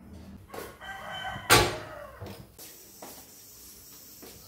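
An animal call, pitched with several overtones, from about half a second in. A single loud knock cuts in at about a second and a half.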